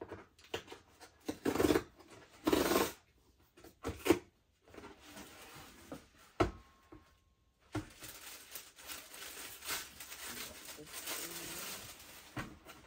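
A cardboard box being opened by hand: a few loud scrapes and tears of cardboard in the first three seconds and two sharp knocks, then tissue paper rustling and crinkling steadily in the last four seconds.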